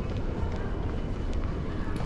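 Outdoor city ambience: a steady low rumble, with light footsteps on stone paving about every two-thirds of a second.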